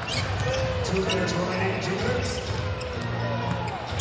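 A basketball being dribbled on a hardwood arena court, with several sharp bounces over steady arena crowd noise.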